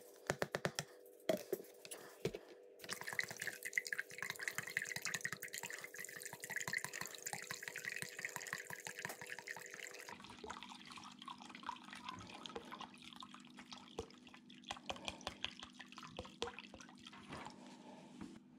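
Liquid poured from a bottle into a part-filled plastic measuring jug: a few drips and splashes at first, a steady pour from about three seconds in, then a thinner trickle with drips after about ten seconds.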